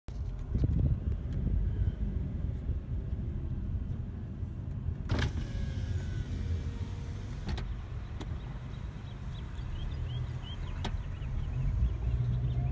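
Low, steady rumble of a car heard from inside its cabin, with a few sharp clicks scattered through it.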